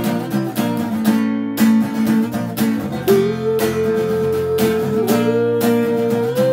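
Acoustic guitar strummed in a steady rhythm of chords, about two strums a second, with no singing.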